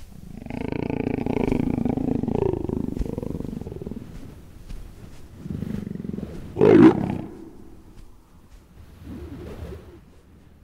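A leopard growling: a long, low growl over the first few seconds, a short, louder snarl a little after the middle, and a fainter growl near the end.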